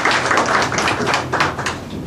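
Audience applauding, thinning out and dying away near the end.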